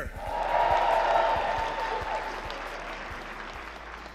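Audience applauding: it swells in the first second, then slowly fades out.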